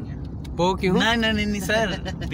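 A voice speaking over the steady low rumble of a moving Honda car, heard from inside the cabin.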